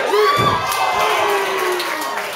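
A small crowd of spectators shouting and cheering, several voices overlapping, rising sharply in the first half second as one grappler lifts his opponent and takes him down to the mat.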